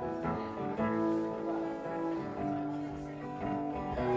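Guitar picking a few slow, held notes quietly, noodling between songs.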